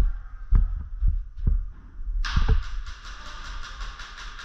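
Heavy footsteps thudding on the sandy floor as the camera-wearing airsoft player moves. About halfway in, a rapid, even rattle of airsoft gunfire starts, about seven shots a second, and keeps going.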